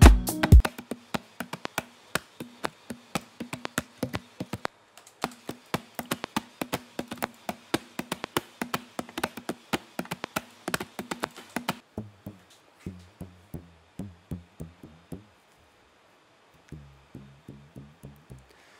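A recorded sample of clicks and clacks from a household object, played back as percussion: a rapid, irregular run of sharp taps over a faint low hum. About twelve seconds in it gives way to a repeating pattern of low bass notes with clicks, which stops briefly and starts again near the end.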